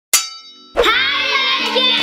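A single ringing clang that fades over about half a second, then a loud, busy intro jingle that starts suddenly and runs on.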